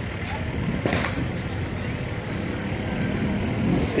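Distant fireworks popping faintly a couple of times, the clearest about a second in, over a steady low rumble.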